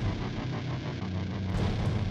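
A low, steady rumbling drone of dark cinematic sound design, with a faint rapid flutter over it in the first second or so.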